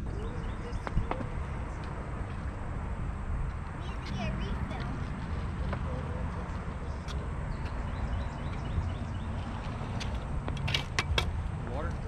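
Outdoor ambience with a steady low rumble and faint children's voices talking and calling, twice more clearly, about four seconds in and near the end. A few sharp clicks and knocks are scattered through it.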